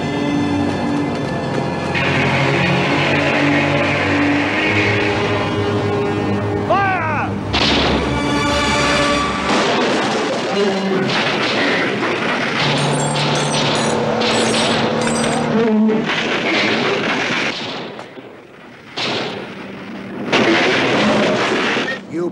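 Movie sound mix of music with heavy gunfire and booms. The shots come thickest in the second half, there is a short lull, and then loud blasts come near the end.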